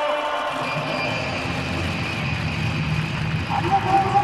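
Large stadium crowd cheering together in answer to a call from the stage, a dense, steady wall of many voices that swells in about half a second in.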